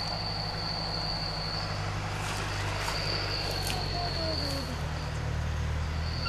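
Insects chirring in a steady high-pitched drone that drops out for about a second, twice, over a steady low hum.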